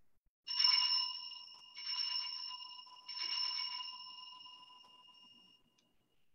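An altar bell is rung three times at the elevation of the consecrated host. The three strikes come about a second and a quarter apart, and each one rings on the same clear tones before fading away.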